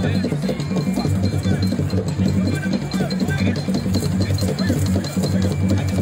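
Traditional Lozi drumming: drums beaten in a dense, steady rhythm, with voices from the crowd mixed in.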